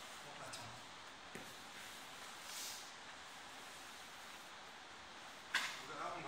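Faint rustling of jiu-jitsu gis and bodies shifting on a training mat, with one brief, louder burst of noise near the end.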